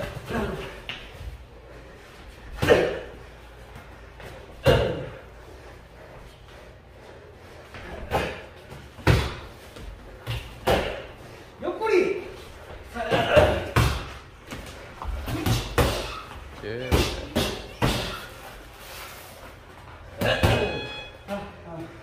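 Boxing-glove punches landing during sparring: about fifteen sharp thuds at irregular spacing, some in quick pairs, with short vocal exhales or grunts from the boxers, echoing in a large room.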